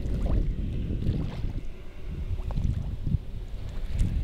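Small waves lapping against a gravel lake shore, with wind buffeting the microphone in an uneven low rumble.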